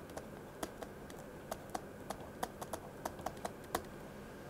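Light, irregular tapping and clicking of a stylus on a pen tablet while words are handwritten, about a dozen faint taps.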